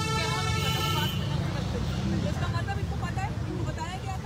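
Several voices talking over one another in an outdoor crowd, over a steady low rumble. A brief held tone sounds during about the first second.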